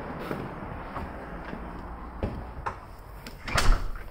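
Footsteps and light handling knocks over a steady background hiss, with one louder, deep thump near the end as a foot lands on carpeted stairs.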